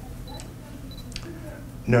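Low steady hum of a microphone and room sound system during a pause in a talk, with a couple of faint clicks about half a second and a second in.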